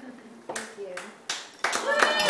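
A few scattered hand claps, then a small group breaking into applause near the end, with a voice calling out over it.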